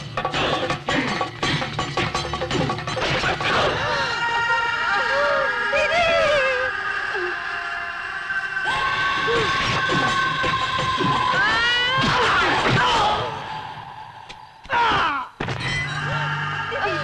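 Dramatic film background score with long held notes and wavering, wailing glides. Over it, a quick run of hits and crashes in the first few seconds, and another loud crash shortly before the end.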